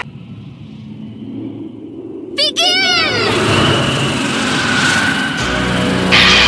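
Anime fight-scene soundtrack: a sudden, sharp pitched sound effect with a quickly wavering pitch about two and a half seconds in, then a dense rushing noise, and low music coming in near the end.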